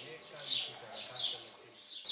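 A small bird chirping over and over: short chirps that fall in pitch, repeating a little over half a second apart.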